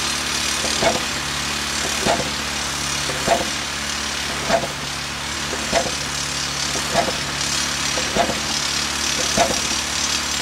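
Rock drill working into a cliff face: a steady machine running with a hiss, and a regular pulse a little more than once a second.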